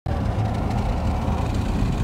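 Steady road and engine noise of a car driving along a highway, heard from inside the cabin.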